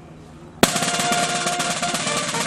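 Field drums break into a sustained roll about half a second in, opening on a sharp hit. Under the roll the brass of a wind band holds one long note.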